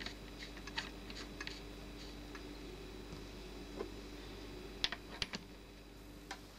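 Small metal clicks and taps as a knurled plug is screwed into the top of a model steam locomotive's boiler and a brass dome cover is set down over it, with a few quick clicks near the end. A faint steady hum lies underneath.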